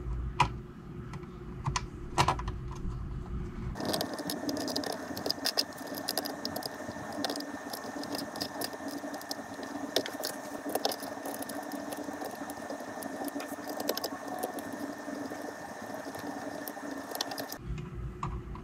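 Small metal screws and a nut clicking and tapping as a 3D-printed bed pull is fastened by hand to a 3D printer's metal bed plate. A steady hum sets in abruptly about four seconds in and stops abruptly near the end.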